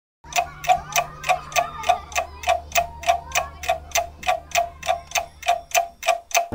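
Rapid, even clock-like ticking, about three sharp ticks a second, over a faint low steady drone. It starts a quarter of a second in.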